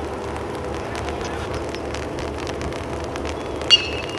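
Metal baseball bat striking a pitched ball near the end: one sharp ping with a brief metallic ring, heard over steady outdoor background noise and faint voices.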